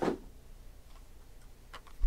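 Trading cards and foil card packs being handled on a table: a short rustle at the start, then a couple of light clicks near the end.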